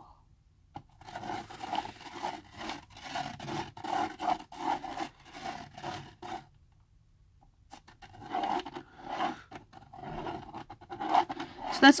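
A pen tip scratching on paper as a plastic spirograph gear wheel is rolled around the toothed ring of a spiral art toy, in quick repeated strokes, with a pause of about a second midway.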